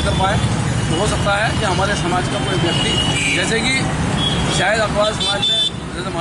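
Voices talking over a steady rumble of street traffic, with a few short high tones sounding through it.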